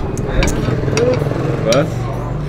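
Low, steady rumble of a motor vehicle engine running close by, under scattered voices.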